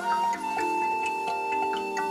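Instrumental new-age music: a single long held high note, flute-like, enters just after the start and sustains over a quick, ticking pattern of short repeated keyboard or mallet notes.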